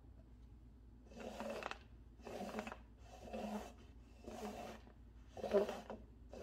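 Paper cups sliding and scraping across the floor as they are shuffled by hand, about once a second, six strokes.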